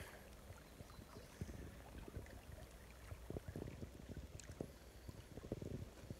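Faint lapping of small waves at a rocky lake shore, with soft, irregular little splashes.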